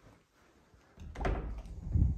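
A hinged closet door being pulled open by its lever handle. It is quiet at first, then from about a second in comes a low, rushing thud as the door swings open, loudest near the end.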